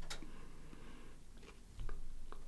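Close-miked mouth sounds of someone chewing raw garlic behind her hand: a sharp click just after the start, faint wet noises, and a soft low thump near the end.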